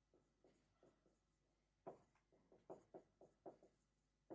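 Felt-tip marker writing on a whiteboard: a quiet run of short strokes and taps, faint at first and coming quicker and more distinct from about two seconds in.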